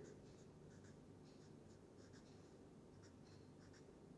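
Faint strokes of a felt-tip marker writing on paper: many short, separate scratches in quick succession as small arrows are drawn.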